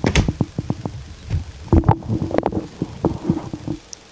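Hard plastic clicks and knocks as a TRS-80 Pocket Computer is pushed and seated into its printer/cassette interface. There are irregular runs of sharp clicks with a few duller thumps, mostly in the first second and again around two seconds in.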